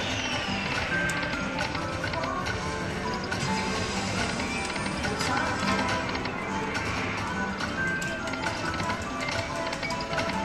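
Dragon Bucks slot machine playing its free-game music and reel sounds while the free spins run, a steady stream of short electronic tones at changing pitches.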